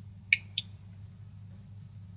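A steady low hum in a pause between sentences, with two brief clicks about a third of a second in, a quarter second apart.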